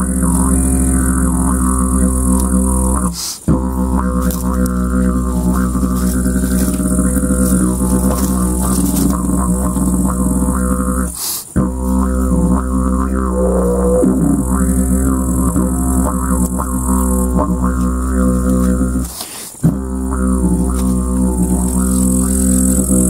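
Homemade box didgeridoo, built from glued wooden panels and spruce strips with an inner channel widening from 3 to 5 cm, played as a steady buzzing drone with shifting overtones. The drone breaks off briefly three times, about eight seconds apart, for the player's breath, and a short rising tone comes in about halfway through.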